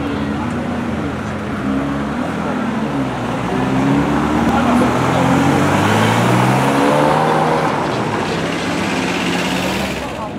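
Ferrari 360 Spider's V8 engine pulling away at low speed, its revs rising and falling a few times, growing louder as it accelerates through the middle of the clip and easing off near the end.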